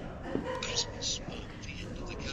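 Hushed whispered speech, with short hissing 's' sounds and little voice behind them.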